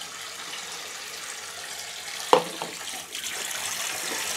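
Kitchen tap running steadily into a stainless-steel sink, with one short knock about two seconds in.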